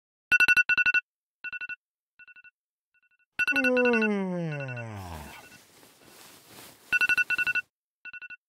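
Smartphone alarm ringtone sounding in quick bell-like trills that repeat and die away as echoes. A few seconds in, a low tone slides steadily down in pitch for about two seconds, followed by a soft hiss, and the loud trills return near the end.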